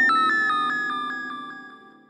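Synthesizer sting in the background score: a bright, quickly pulsing high note that starts suddenly and fades away over about two seconds.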